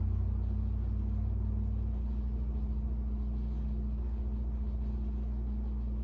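A steady low motor hum, its tone shifting slightly about two seconds in.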